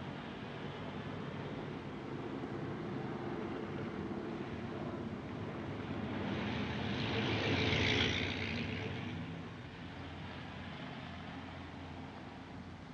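Steady rain falling over a low hum. A louder hiss swells and fades about eight seconds in.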